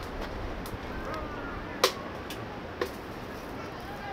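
Faint, distant voices of people talking over a steady outdoor background hiss, with two sharp clicks about two and three seconds in, the first the loudest.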